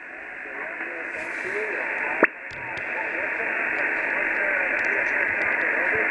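Kenwood TS-480HX HF transceiver's speaker giving the hiss of a single-sideband channel on the 20-metre band between transmissions. The hiss swells gradually, with faint warbling of weak signals in it and a sharp click about two seconds in.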